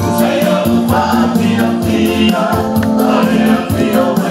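Samoan church choir singing a festive song with music behind it and a steady, quick beat.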